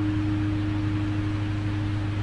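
A single steady, pure tone held for about two and a half seconds over a low constant hum: a sustained note of the gamelan accompaniment between the sung phrases.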